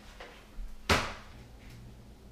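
A wooden kitchen cabinet door being handled: a faint knock, then a single sharp clack about a second in.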